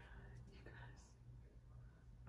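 Near silence: room tone with a steady low hum and faint whispered voices.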